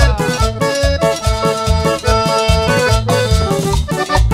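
Live band playing upbeat Latin dance music, an accordion carrying held melody notes over a regular pulsing bass.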